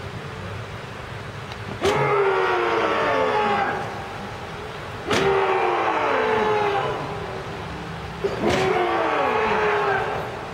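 A group of people yelling together in unison three times. Each call starts sharply and falls in pitch over about two seconds, with several voices heard at once.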